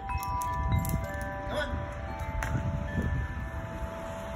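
Wind chimes ringing: several clear tones at different pitches, sounding one after another and left to ring on, over a low rumble.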